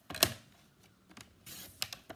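Cardstock being handled and slid into place on a plastic paper trimmer: a sharp knock about a quarter second in, then a brief sliding scrape and a couple of light clicks near the end.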